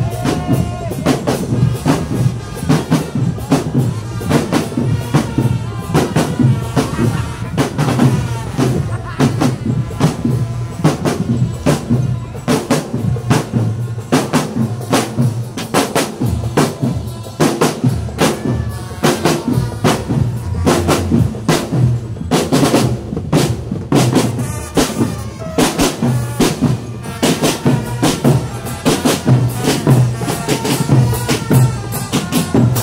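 Marching drum band playing on the move: a dense, steady pattern of snare drums with rolls over a bass-drum beat, and cymbals. A melody plays over the drums.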